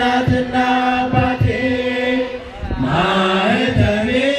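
A large crowd singing an Ethiopian Orthodox hymn together in unison, with long held notes and a slow downward slide in pitch a little past the middle. Several short low thumps sound under the singing.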